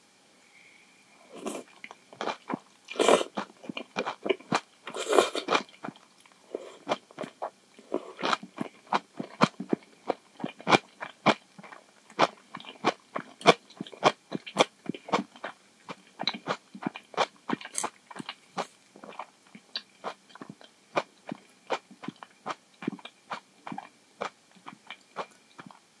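Close-miked mouth sounds of a person eating instant miso ramen noodles. Two longer, noisier slurps come about three and five seconds in, followed by steady wet chewing with short clicks about twice a second.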